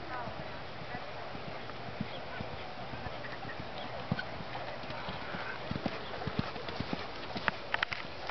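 Hoofbeats of a horse cantering on arena dirt, growing louder in the last few seconds as the horse comes close.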